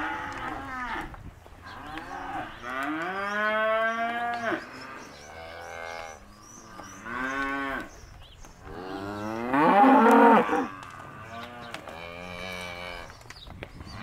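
Angus cows mooing, about five long calls one after another from several animals, some rising in pitch and then holding; the loudest comes about ten seconds in.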